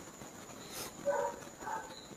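A quiet pause in a man's talk: low room tone with a short soft breath and a few faint vocal sounds about a second in, before his speech resumes just after the end.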